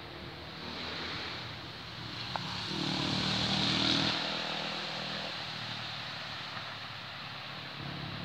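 A single sharp click of a croquet mallet striking a ball about two and a half seconds in. Under it, a louder engine-like hum with a hiss swells to a peak around four seconds in and then fades.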